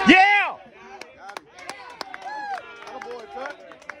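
A loud nearby voice at the very start, dropping in pitch, then faint distant voices with scattered sharp clicks and pops.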